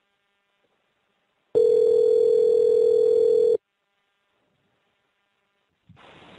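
Telephone ringback tone: one steady, slightly warbling ring of about two seconds, starting and stopping sharply, with silence before and after. It is the sign that the called phone is ringing and has not yet been picked up.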